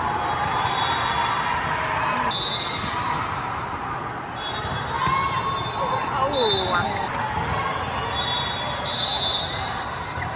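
The busy, echoing din of a convention-hall volleyball tournament: many voices of players and spectators, with volleyballs being struck during play. Several short, high whistle blasts from referees on the courts come through the din.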